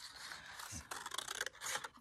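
Scissors cutting paper along a traced line: a few faint snips with the rustle of the sheet.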